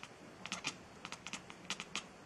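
Light, sharp clicks and taps in quick irregular clusters, several strokes to each cluster.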